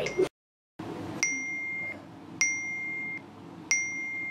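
A mobile phone's message alert: the same single high electronic beep, with a sharp start, sounds three times about 1.2 seconds apart, each lasting under a second, as message after message comes in. The sound drops out completely for about half a second just after the start.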